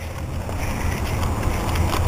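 Wind buffeting the handheld camera's microphone, a steady low rumble.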